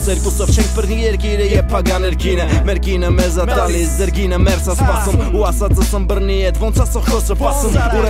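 Armenian hip hop song: rapped vocals over a beat with deep, steady bass and regular drum hits.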